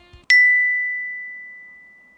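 A single bright bell-like ding, an edited-in sound effect, struck once just after the start and ringing on as one high tone that slowly fades away.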